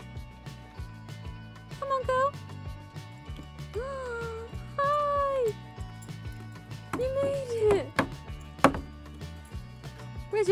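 A dog whining in a series of high, drawn-out whines, several sliding down in pitch at the end, as it fixes on chickens, over steady background music. Two sharp knocks come near the end.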